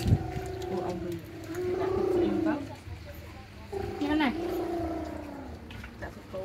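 People's voices talking at a shared meal, in a few drawn-out phrases, with a brief sharp knock right at the start.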